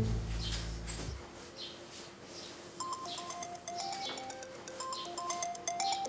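Mobile phone ringing with a melodic ringtone of short, stepped notes, starting about three seconds in. Before it, soundtrack music ends about a second in.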